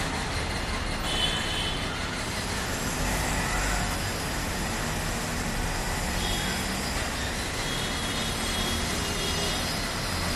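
Steady city background noise, a constant hiss with a low rumble like distant road traffic, with a few faint high chirps over it.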